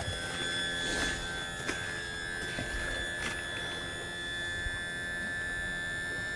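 Electric power trim/tilt motor of a Mercury outboard whining steadily as it lowers the outboard's lower unit, so that lake water trapped inside can drain out.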